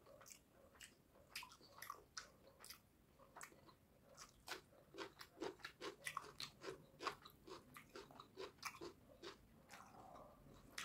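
Close-miked chewing of a mouthful of rice and fish curry: a run of short, wet mouth clicks, settling into a steady rhythm of about two chews a second from about halfway through.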